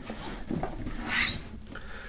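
Cardboard box lid being slid down onto its cardboard box, a soft papery scrape that swells about a second in.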